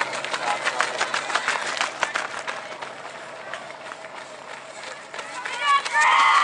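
Footfalls of a pack of cross-country runners passing close by on a path: many quick, overlapping steps that thin out after about three seconds. A voice shouts near the end.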